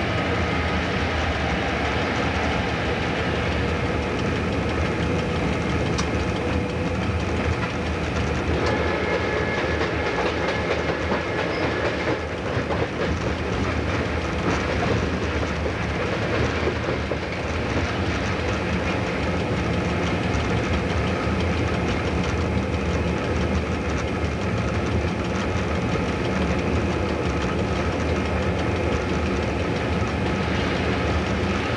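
Cab of X class diesel-electric locomotive X31 under way with a goods train: the engine runs steadily under the clatter of the wheels on the track.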